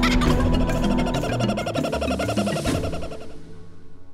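Laughing kookaburra call, a rapid run of repeated chuckling notes, over closing music; both fade away towards the end.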